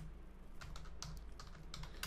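Computer keyboard being typed on, a quick run of separate keystrokes entering a short terminal command, over a faint steady low hum.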